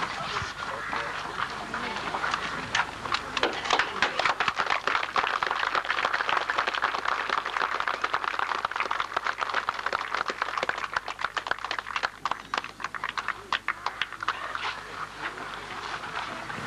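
Crowd applauding. Scattered claps grow into dense applause a few seconds in and thin out near the end.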